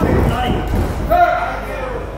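Boxing gloves thudding in a close-range exchange of punches, a cluster of dull knocks in the first second, with a loud shout over them just after the middle.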